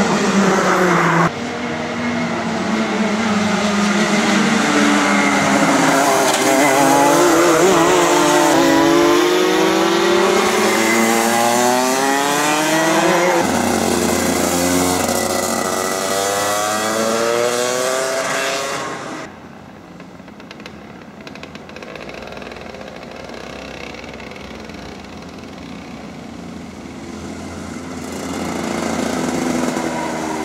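Two-stroke racing kart engines at full race pace, the revs climbing in rising whines along the straights and dropping off into corners. The sound is loud at first, falls suddenly to a more distant drone about two-thirds of the way through, and builds again near the end.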